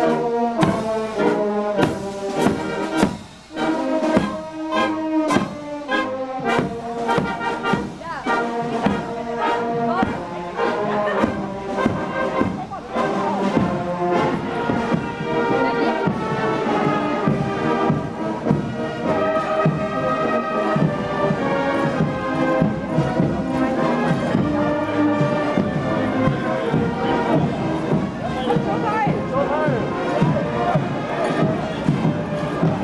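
Brass marching band playing a march as it passes, tubas and baritone horns carrying the tune over a steady drum beat. From about twelve seconds in the music grows less distinct and the voices of onlookers mix in.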